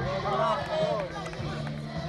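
Several men's voices chatting indistinctly over a steady low hum.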